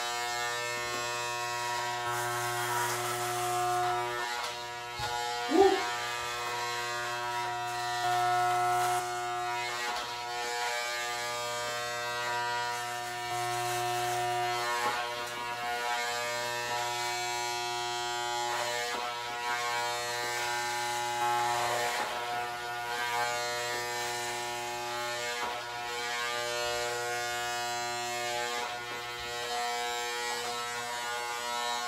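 Electric hair clipper with a number-one guard buzzing steadily as it cuts hair on the side of the head. A single brief louder sound comes about five and a half seconds in.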